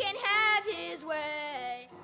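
A child singing solo: a short sung phrase, then one long held note that stops just before the end.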